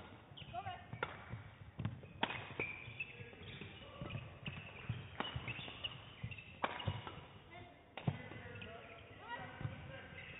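Badminton rally: rackets strike the shuttlecock about six times, one to three seconds apart, and players' shoes squeak on the court floor between the hits.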